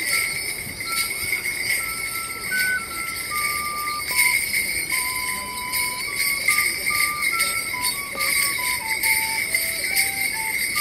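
Morris dancer's leg bells jingling with each step and hop of a solo jig, over a simple dance tune played one note at a time.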